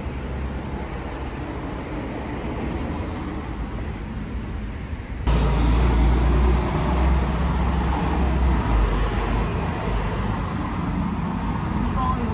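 Road traffic noise from passing cars: a steady low rumble and hiss that turns suddenly louder and deeper about five seconds in.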